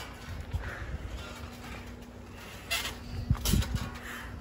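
Wrestlers moving about on a backyard trampoline: low thuds of the mat under their weight, with a couple of sharper bounces near the end.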